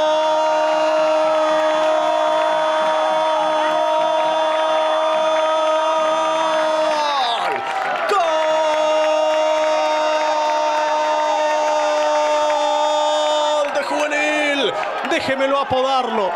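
Football radio commentator's long goal cry, "gol" held on one steady pitch for about seven seconds, then after a quick breath held again for about five more, breaking into quicker shouting near the end: celebrating a goal just scored.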